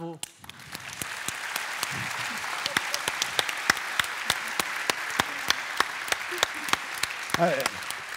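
Audience applauding. The clapping swells over the first second and then holds steady, with single sharp claps standing out. A man's voice comes in near the end.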